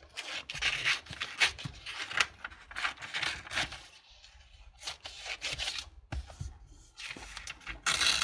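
Magazine paper being handled and cut out with scissors: irregular rustling, rubbing and snipping of paper, with a short lull about four seconds in.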